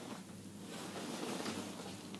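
Faint rustling of a parka's fabric as it is lifted and turned over by hand.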